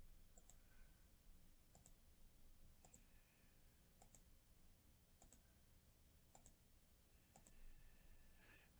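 Faint computer mouse clicks at a steady pace of about one a second, around seven in all.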